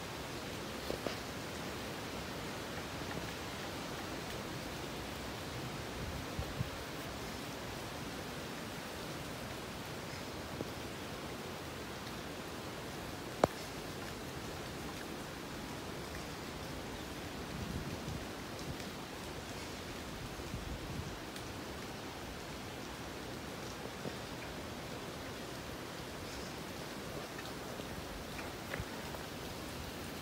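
Steady, even hiss from a steaming, boiling geothermal hot-spring pool under wind, with one sharp click about thirteen seconds in.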